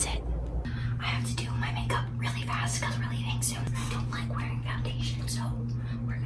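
Soft whispering over a steady low electrical hum that comes in under a second in, typical of a plugged-in microphone picking up mains hum.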